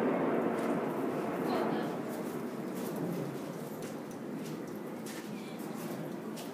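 Faint background chatter of a small group of onlookers, with no loud single event.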